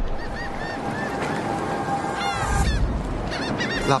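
Birds calling in short, repeated chirps over a steady rush of noise, with a few falling calls a little after two seconds in.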